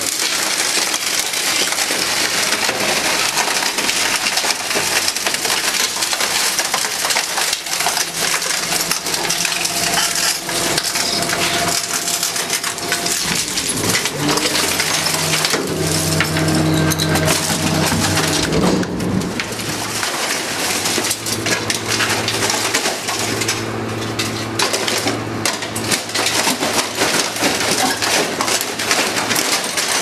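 Refuse truck's rear compactor crushing a washing machine: continuous crackling and creaking of metal and plastic giving way. Under it the truck's hydraulics run with a whine that shifts in pitch through the middle and settles to a steady hum near the end.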